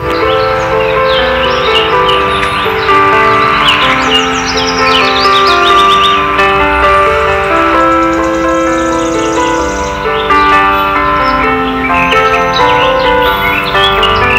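Background music of slow, held, overlapping notes, with short high chirps over it.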